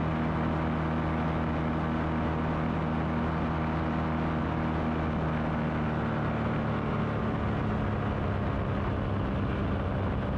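Light aircraft's engine and propeller drone steadily in flight, and the engine note shifts about two-thirds of the way through.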